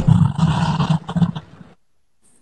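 Low rumbling roar of a live-stream gift-animation sound effect, pulsing and fading out about one and a half seconds in.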